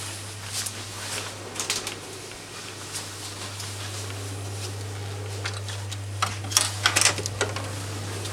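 A steady low hum, with scattered light clicks and knocks and a cluster of sharper clicks about six to seven seconds in.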